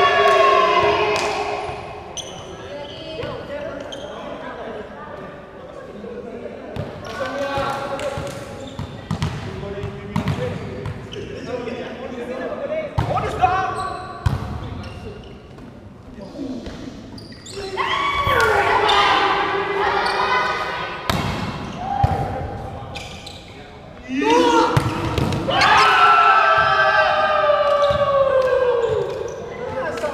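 Volleyball game in a large echoing hall: players shouting and calling out, with long loud calls near the start, around two-thirds of the way in and again near the end, and sharp smacks of the ball being hit throughout.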